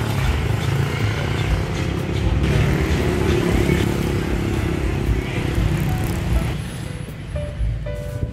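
Background music with a steady rumble of street traffic underneath.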